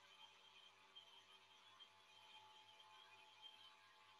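Near silence with a faint steady hum: the vacuum pump running as it evacuates the vacuum chamber.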